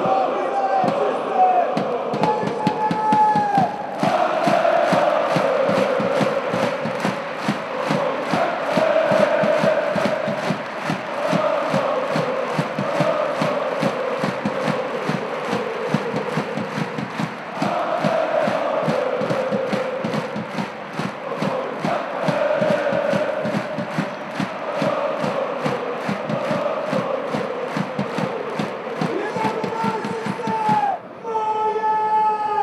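Thousands of football supporters chanting in unison. Their singing is joined about four seconds in by fast, steady rhythmic handclapping that keeps time under the chant.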